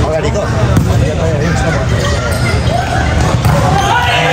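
Several voices talking and calling over one another, with a few thuds of a volleyball striking or bouncing.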